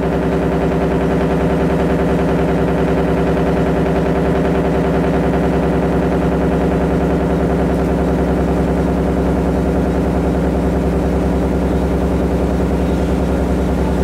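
Analog synthesizer drone: a steady, low held chord with many overtones, pulsing rapidly and evenly, opening an electronic track.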